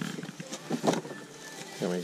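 Cardboard box being handled, with a few brief rustles and knocks, then a man's voice starting near the end.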